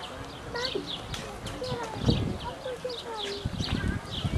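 Birds chirping over and over in quick short calls, with faint murmured voices and a few soft low knocks underneath.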